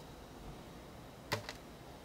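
Two quick sharp clicks close together, a little over a second in, over faint background noise.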